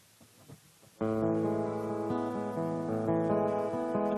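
Near silence with a few faint knocks, then about a second in, strummed acoustic guitar chords start abruptly and ring on steadily.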